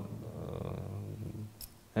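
A person's low, creaky murmur trailing off, then a short click about one and a half seconds in.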